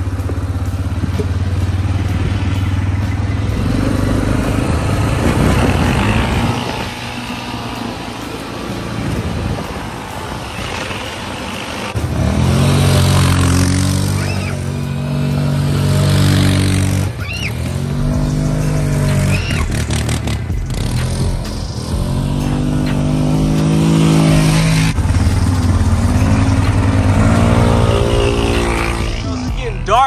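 An ATV engine running close by, with a low steady rumble. Over the second half it revs up and eases off in several surges as it is ridden around.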